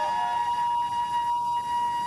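A flute holding one long, steady note in devotional music.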